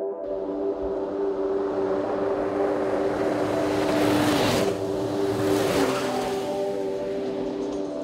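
Polaris RZR Pro R side-by-side, with its 2.0-litre four-cylinder engine, driving fast past on a gravel road. The noise swells to a peak about four seconds in, falls away, and swells again briefly near six seconds.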